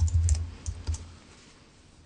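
Soft clicks and taps over a low rumble, dying away about a second in.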